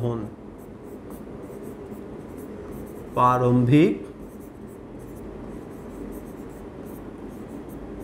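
A pen writing on a board in short scratching and tapping strokes as words are written out. One short spoken word comes a little over three seconds in.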